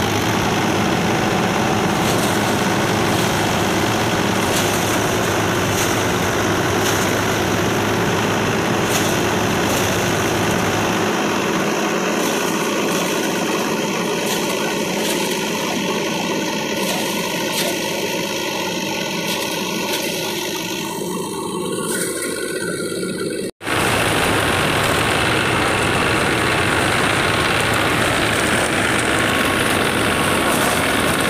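A paddy thresher driven by a tractor engine runs steadily as rice sheaves are fed into its spinning drum, making a loud continuous machine drone. It cuts out for an instant about two-thirds of the way through, then carries on.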